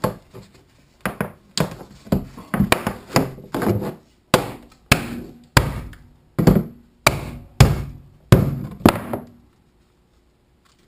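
A mallet knocking white PVC pipe fittings into place on the pipe frame of a fabric hammock: a run of sharp knocks, about two a second, stopping near the end.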